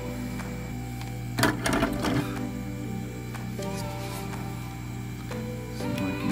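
Background music with steady sustained tones over a low steady hum, and a short louder passage about one and a half seconds in.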